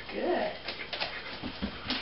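A dog whining briefly in the first half second, followed by a few sharp clicks.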